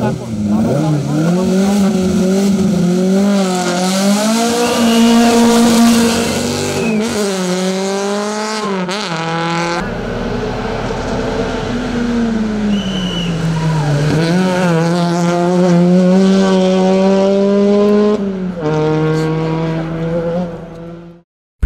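Hill-climb race cars' engines revving hard, the pitch climbing and then dropping sharply at each gear change, several times over. A couple of brief high tyre squeals.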